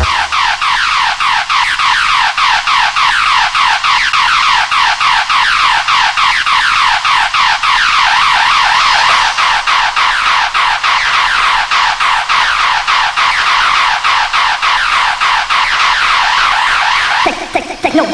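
Breakdown in a hardcore dance mix: an electronic sound repeating quick falling-pitch sweeps, about four a second, with the kick drum and bass dropped out. A lower sound comes in near the end.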